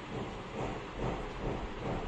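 Faint handling noise of knitted wool fabric and embroidery thread being moved and gripped, a few soft swishes over a steady background hiss.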